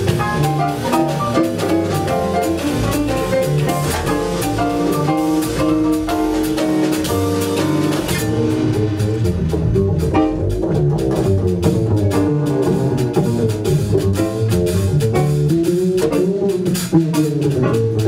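A jazz trio plays a blues on electric keyboard, upright double bass and drum kit. About eight seconds in, the keyboard drops out, leaving walking bass and drums with cymbal strokes.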